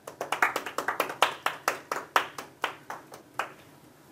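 Audience applauding: a run of distinct, separate hand claps, about five a second, thinning out and fading near the end.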